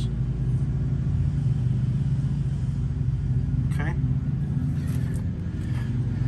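A steady, even low hum from an idling engine.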